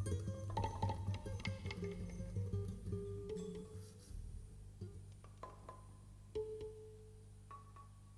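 Ambient music at the close of a track: ringing plucked and struck notes over a low steady drone. The notes grow sparse and the music fades about halfway through, leaving a few single notes near the end.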